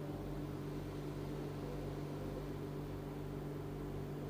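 A steady low hum with a faint even hiss behind it, unchanging throughout, with no bell or other struck sound.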